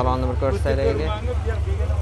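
Voices talking over a steady low rumble, with one sharp click right at the start as the driver's door handle of a Damas minivan is pulled and the door is opened.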